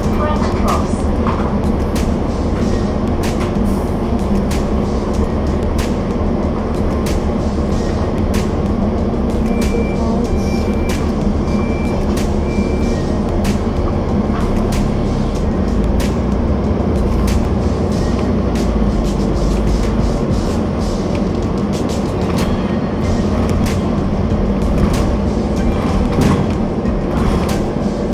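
Inside a double-decker bus on the upper deck: the engine's steady low hum with frequent clicks and rattles from the bodywork. About ten seconds in, four short warning beeps sound, evenly spaced.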